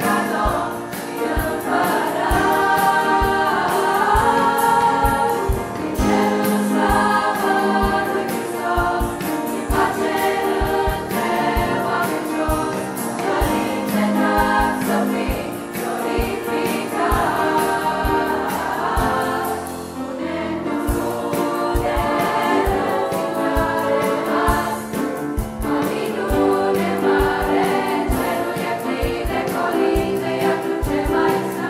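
A men's choir singing a Romanian Christmas carol (colindă) in sustained, multi-part harmony.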